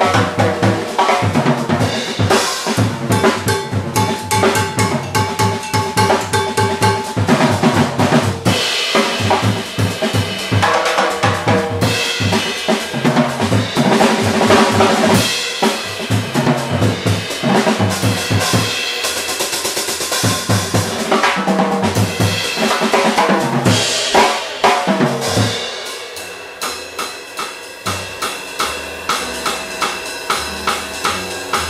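A jazz trio playing a tune in 5/4, with a busy drum kit out front (snare, bass drum and rimshots) over lower pitched notes from the other instruments. About 26 seconds in the playing drops to quieter, sparser hits.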